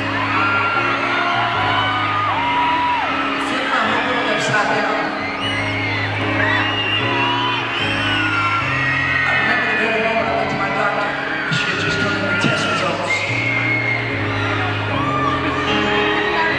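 Baldwin grand piano played live, slow sustained chords changing every second or two, with high screams and whoops from the audience over it.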